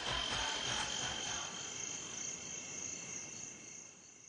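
Steady high insect chirring, like crickets in a jungle, with the last low beats of the music dying away in the first second or so; then the chirring fades out.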